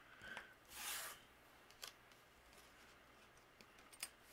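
Near silence with faint handling sounds: a soft rustle about a second in and a few light clicks as thin metal cutting dies are set out on cardstock.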